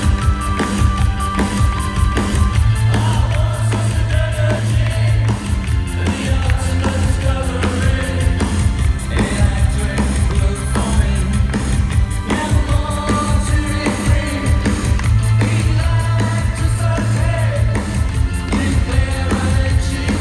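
A live synth-pop band playing a fast song: drums, bass guitar and synthesizers, loud and steady, recorded from within the crowd.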